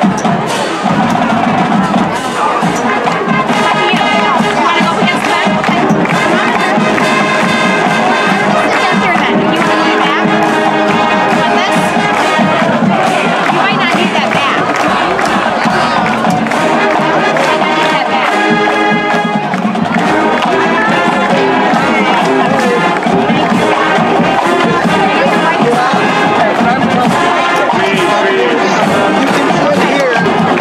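High school marching band playing, led by brass (trumpets and trombones) in held and moving chords.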